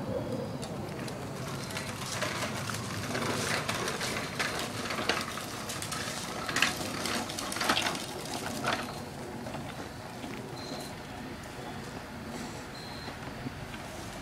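Plastic wheels of a toddler's ride-on push toy rattling and clattering over stone paving, with a run of sharp clicks and knocks in the middle stretch, easing off as it rolls onto grass.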